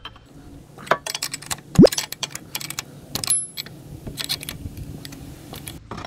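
Irregular metallic clicks and clinks of a hand tool and the loosened crankshaft pulley of a Porsche 996 Turbo engine as the pulley is worked off the crank. The loudest sound is one brief rising squeak about two seconds in.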